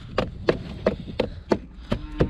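A boot kicking snow away from around a car's front tyre: about six soft thuds at roughly three a second.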